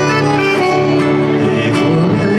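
Live gaúcho folk dance music from a piano accordion and two acoustic guitars, playing an instrumental passage between sung lines.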